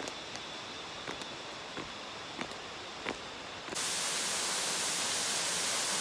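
A few faint clicks over quiet outdoor air. Then, about two-thirds of the way through, there is an abrupt switch to the loud, steady rush of a small waterfall pouring down rock into a pool.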